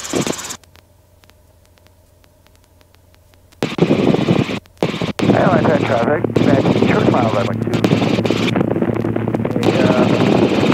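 Helicopter intercom and radio audio. After a few seconds of low hiss with faint regular clicks, a loud burst of radio noise with a garbled, unintelligible voice starts about four seconds in, over a steady low hum.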